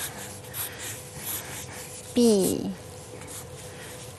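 Pencils scratching softly on paper during freehand sketching, with one short spoken syllable about two seconds in.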